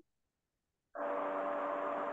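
Steady electrical-sounding hum over a hiss, picked up by an open microphone on a video call; it cuts in abruptly about a second in, after a moment of dead silence from the call's noise suppression.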